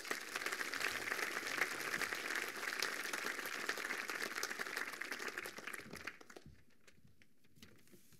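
Audience applauding, a steady patter of many hands clapping that fades out about six seconds in, leaving a few faint knocks.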